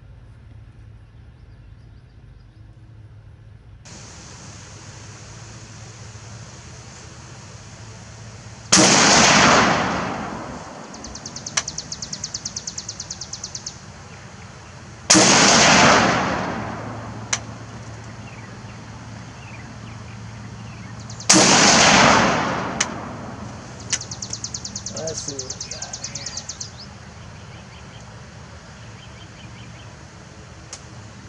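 Three rifle shots from a Beretta ARX 100 in 5.56×45mm, about six seconds apart, each a sharp report with a long echoing tail.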